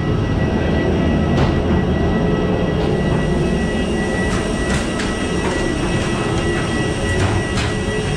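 Steady low rumble of a moving vehicle with a constant high whine and scattered sharp clicks and rattles.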